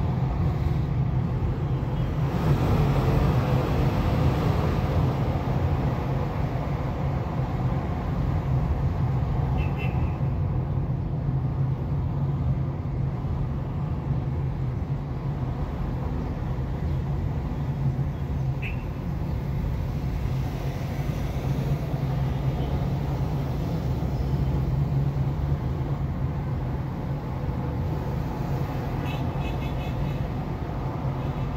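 Steady low drone of a car's engine and tyres in slow city traffic, heard from inside the cabin, swelling for a few seconds about two seconds in.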